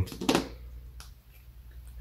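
A few light, sharp clicks of metal gearbox synchro rings being handled on a workbench, the clearest about a second in, over a faint low hum.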